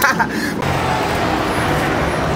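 Steady city street traffic noise, the even hum of motor vehicles on the road, after a burst of laughter and voices at the start.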